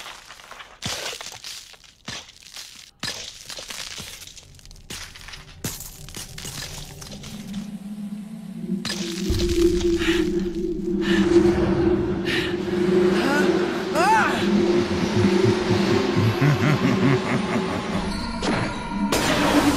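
Anime sound effects of a cracked shell of sand armor breaking up: a run of sharp cracks and crumbling in the first half. From about halfway a sustained low drone swells louder, with music underneath.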